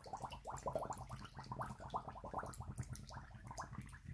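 Air glugging out of an open, empty plastic bottle held under water, in a quick run of bubbles at several a second that fades near the end. The water is pushing the air out of the bottle as it fills.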